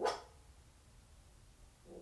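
A dog barks once, a single sharp, loud bark, followed by a fainter, shorter sound near the end.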